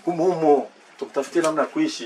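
A man speaking in two short phrases.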